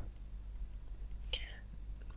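A pause in speech with a steady low hum on the recording, and one short intake of breath about a second and a half in.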